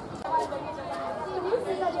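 People talking in Indonesian, more than one voice.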